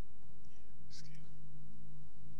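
A brief whisper picked up by the microphone about a second in, over a steady low hum.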